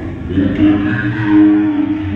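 Worship singing with a voice holding one long note, starting about half a second in.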